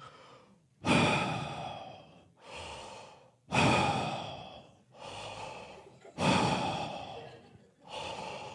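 A man breathing heavily and slowly straight into a handheld microphone, imitating a creepy caller's heavy breathing on the phone. There are three loud, drawn-out breaths, each fading away, with quieter breaths between them.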